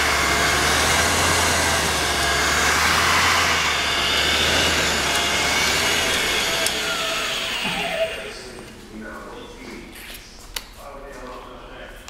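Hunter OCL400 on-car brake lathe's drive motor running and spinning the hub adapter with its anti-chatter control switched on: a steady hum under a wavering whine. About eight seconds in the motor winds down with a falling whine and the sound drops away, leaving a few light clicks.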